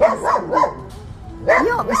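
A dog barking in a short burst near the start, then quieter.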